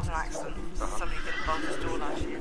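A horse whinnying in short wavering calls, over a steady low drone.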